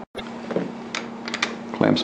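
A few light clicks and taps of metal and plastic parts as a modular SMC air filter-regulator-lubricator unit is handled and fitted back together, over a faint steady hum.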